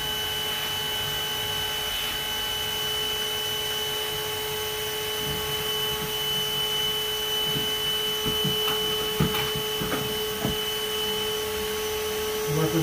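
Bee vacuum running steadily, drawing honey bees off exposed comb through its hose, with a few soft knocks in the second half.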